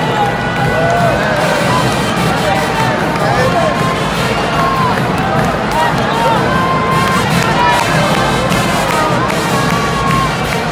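Basketball arena crowd cheering and shouting, many voices rising and falling over each other, with music playing underneath.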